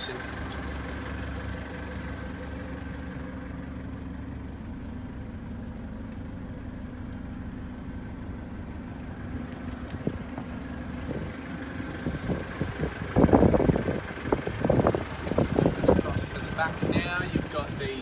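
A vehicle engine idling with a steady hum. About two-thirds of the way in, several seconds of loud, irregular rumbling noises take over.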